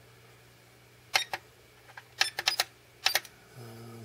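Plastic push buttons on a SkyRC MC3000 battery charger clicking as they are pressed: several short clicks in three quick runs, about a second apart, stepping through the charger's program menu.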